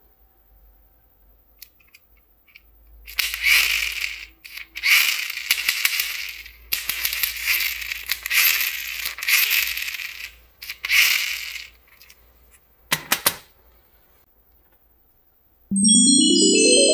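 Plastic toy train rattling as it is handled and shaken by hand, in a series of clattering bursts, followed by a single short knock. Just before the end a chiming musical run starts, rising in pitch.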